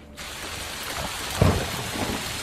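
Steady rainfall that starts suddenly just after the start, with a low rumble of thunder about a second and a half in.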